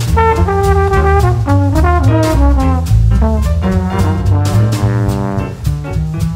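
Live jazz combo: a trombone plays the melody over grand piano, upright bass and drum kit with ride cymbal. The trombone line steps downward through the first half and settles on a long held note near the end.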